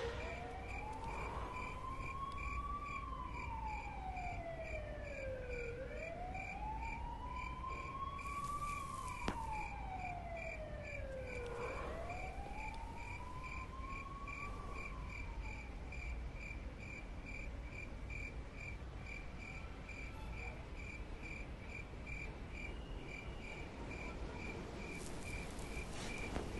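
A cricket chirping steadily at about two chirps a second, with a siren wailing in three slow rise-and-fall sweeps that fade out about two-thirds of the way through.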